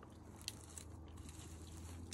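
Faint scuffs and crisp clicks of a boulderer's hands and climbing shoes on the rock, with one sharper click about half a second in, over a steady low hum.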